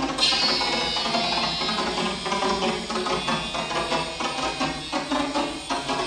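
Live electro-acoustic improvisation: a dense, shifting wash of live instruments bent by digital processing and triggered sound files. A bright high ringing enters suddenly just after the start and fades over about two seconds.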